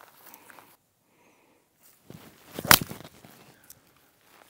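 A five-iron shot played from the rough: soft rustling, then one sharp, loud crack of the clubface striking the ball about two-thirds of the way through, for a low punch shot that gets the ball out.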